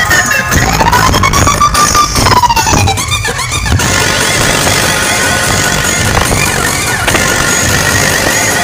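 Loud electronic dance music played over a large outdoor DJ sound system, with heavy bass. A siren-like synth tone rises and falls through the first few seconds, the bass drops out briefly around three seconds in, and the track then settles into a steadier stretch.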